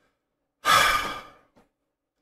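A man's audible breath, a noisy sigh that starts about half a second in and fades out over about a second.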